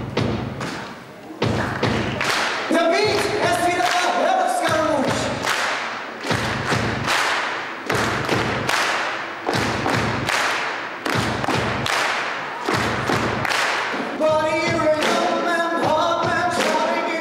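Live stage musical: a steady thumping beat, with voices singing held notes over it about three seconds in and again near the end.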